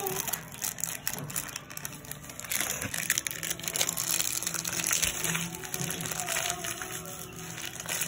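Crinkly plastic wrapper of a L.O.L. Surprise doll packet being unwrapped and crumpled by hand, with irregular crackling throughout. Music plays underneath.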